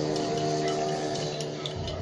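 A metal teaspoon stirring in a ceramic mug of warm water gives light, irregular clinks against the mug's side. Background music with steady held notes runs under it.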